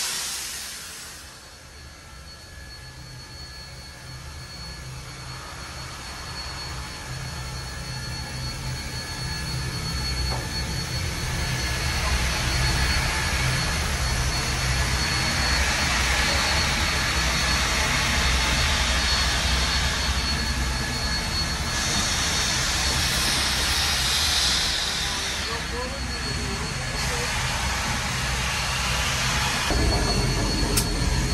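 Cab noise of the Union Pacific Big Boy No. 4014, a 4-8-8-4 articulated steam locomotive, moving off slowly: a steady hiss of steam over a low throbbing rumble, growing louder through the first half, with a stronger burst of hiss for a few seconds about three quarters of the way in.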